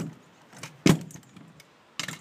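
Razor A kick scooter dropping down wooden steps: a loud clack about a second in as it lands, with a few lighter knocks and rattles around it.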